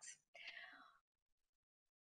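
Near silence between sentences of a talk: a faint, brief voice sound about half a second in, then dead silence.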